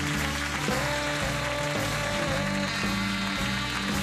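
Talk-show house band playing bumper music into a commercial break, with a moving bass line under pitched instrument notes.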